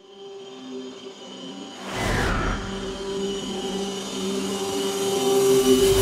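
Intro music for a logo animation: steady held tones that build gradually, with a deep whoosh about two seconds in, swelling to its loudest near the end.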